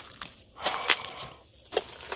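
Footsteps crunching over burnt debris: four sharp crunches and crackles, one at the start and then about every half second, with a longer gap before the last.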